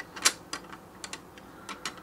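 Light clicks and taps of a plastic toy roof panel being pressed into place against wooden toy logs: one sharper click about a quarter second in, then several fainter ones.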